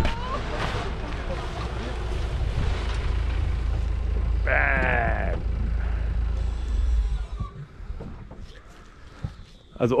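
A steady low rumble that drops away about seven seconds in, with one drawn-out call from a person's voice about halfway through; a few faint knocks follow in the quieter stretch.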